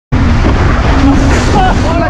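Heavy wind buffeting on the microphone and water rushing past the hull of a Diam 24 sailing trimaran moving fast, a loud low rumble; a voice starts near the end.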